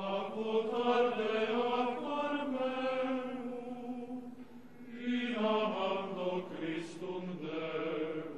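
Slow sung liturgical chant in long, held notes: two phrases with a short breath between them about four seconds in.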